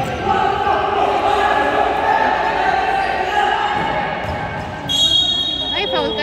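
Basketball being dribbled on a gym's hardwood-style court floor, with players' voices calling out and echoing in the hall. A short, steady, shrill whistle blast sounds about five seconds in, typical of a referee's whistle.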